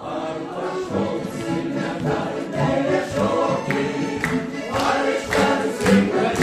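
Mixed choir of men's and women's voices singing a song in harmony, accompanied by two accordions. The singing picks up on a new phrase right at the start.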